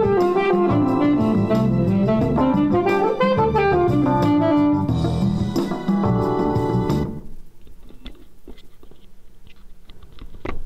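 Saxophone improvising a pentatonic line over a backing track of E7sus4 and Dm7 chords with keyboard and bass. The saxophone stops about five seconds in, and the backing track cuts off about two seconds later, leaving a few faint clicks.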